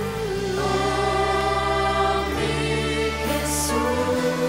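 Slow worship music: sustained keyboard chords under many voices singing long held notes, the harmony shifting to a new chord about every two seconds.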